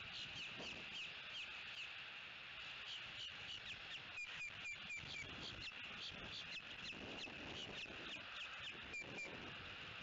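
Birds chirping: a rapid string of short high notes, each sliding downward, with a run of short level peeps about four seconds in and again near the end.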